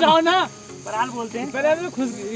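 People talking, over a steady high chirring of insects.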